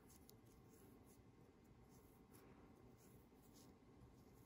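Near silence: faint rustling and a few soft ticks as polyfill stuffing is pushed into a crocheted yarn handle with the tip of a pair of scissors.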